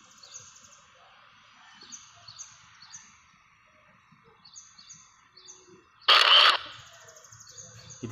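A bird chirping in short runs of about three quick, high, falling notes, repeated every couple of seconds over faint background hiss. About six seconds in, a single loud, sharp burst of noise lasts about half a second.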